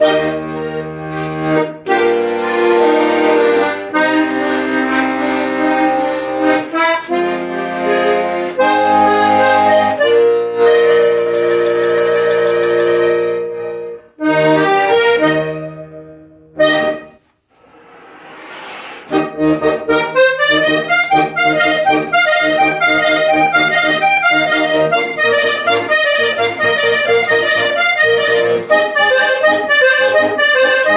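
Hohner Corona III three-row button accordion playing. For the first half it sounds held chords over low bass notes, changing every second or two, with a couple of short breaks. After a brief pause comes a fast run of quick melody notes that lasts to the end.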